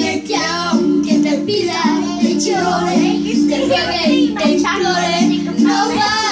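A girl singing along with a song played through a speaker, her voice over a steady, repeating instrumental accompaniment.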